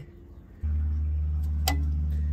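A steady low hum starts suddenly about half a second in and keeps going. A single sharp metallic click comes near the end as the new clutch pressure plate is pushed onto the flywheel's locating dowels.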